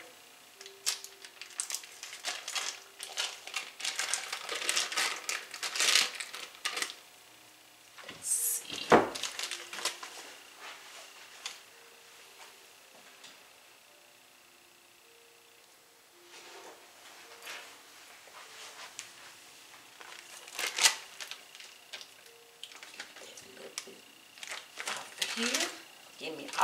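Foil and paper wrappers crinkling and crackling as a block of cream cheese and a stick of butter are unwrapped and squeezed out into a glass bowl, with small taps of handling. A single thump comes about nine seconds in, followed by a quieter spell before the crinkling starts again.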